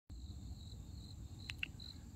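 A cricket chirping softly and high-pitched in the grass, a short chirp about every half second. A couple of light clicks come about one and a half seconds in.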